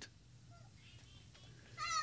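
A pause in a man's speech: quiet room tone with a few very faint short sounds. His voice starts again near the end with a rising syllable.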